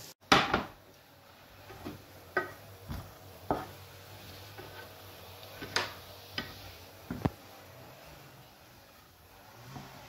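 A plastic slotted spatula knocking and scraping against a frying pan as sliced potatoes and onion frying in oil are stirred: about seven sharp knocks spread through, the loudest just after the start.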